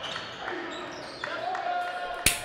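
Basketball gym sound from scrimmage footage: a ball bouncing on a hardwood court, with a steady held tone coming in a bit past halfway.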